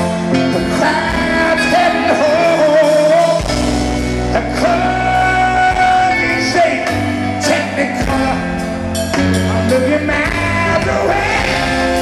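Live rock band playing loudly, with electric guitars, bass, drums and keyboards under a male lead vocal, heard from the audience in an arena.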